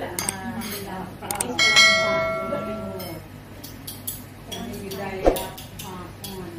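Tableware clattering and clinking as dishes and cutlery are handled at a dinner table; about two seconds in, one loud clink rings out with a clear bell-like tone for over a second, and a sharp knock comes near the end.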